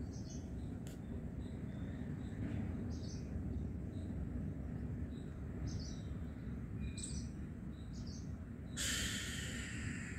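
Birds calling: short, high calls every second or two over a steady low outdoor rumble, with a brief hiss near the end.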